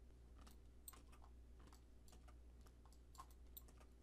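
Near silence with a few faint, scattered computer keyboard clicks as numbers are typed into the software.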